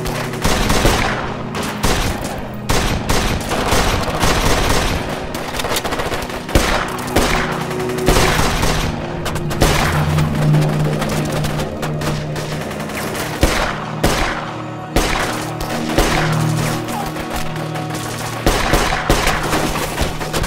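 A gunfight: handgun and rifle fire going off in rapid, irregular volleys with no let-up, over a dramatic music score holding low sustained notes.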